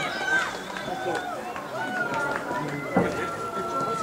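Outdoor football-match sound: players and onlookers shouting across the pitch, one call held for about two seconds, with one sharp thud about three seconds in.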